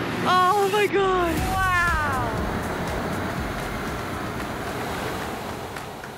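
Excited high-pitched whoops and laughter with falling pitch in the first two seconds, then a steady rushing noise that slowly fades.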